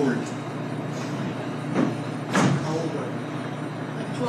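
Room murmur with two brief knocks about halfway through, about half a second apart, the second louder: handling noise from a handheld microphone being passed over and taken up.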